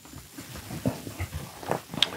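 A few faint, scattered knocks and shuffles of a person walking across a motorhome's floor.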